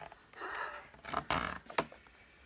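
Hard plastic parts of a Hoover Dustmanager vacuum cleaner being handled: two scraping rustles, the second louder, then a sharp click near the end as the blue filter is lifted out.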